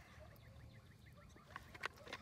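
Near silence: faint outdoor background noise, with two soft clicks near the end.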